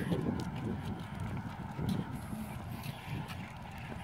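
Soft, irregular footsteps of people and a small dog walking on a concrete sidewalk.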